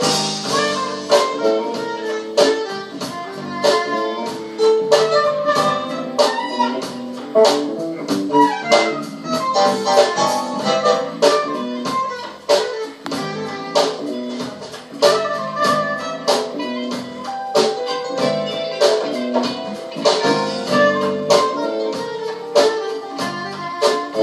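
Live band playing a smooth jazz-soul groove, with a saxophone playing the lead melody over guitar and a steady drum beat.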